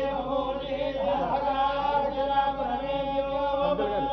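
Hindu priests chanting Sanskrit mantras together in long held notes, with a short break about a second in and another just before the end.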